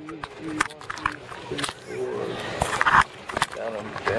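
Indistinct voices talking, with scattered clicks and knocks and a louder knock about three seconds in.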